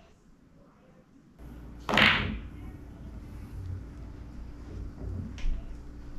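A pool shot: one loud, sharp clack of cue and billiard balls about two seconds in, then a fainter click a few seconds later, over a steady low hum.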